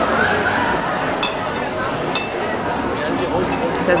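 Busy restaurant dining room: steady background chatter of diners, with cutlery and dishes clinking a few times.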